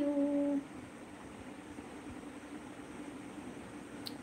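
A woman's voice drawing out the end of "thank you" into a steady hummed note for about half a second, followed by quiet room noise with a faint steady hum.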